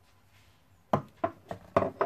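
A quick run of four or five sharp knocks starting about a second in, like a utensil or board being tapped in the kitchen; the last ones are the loudest.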